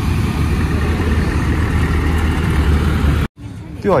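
Loud, steady outdoor background rumble that cuts off suddenly about three seconds in, followed by a voice starting just before the end.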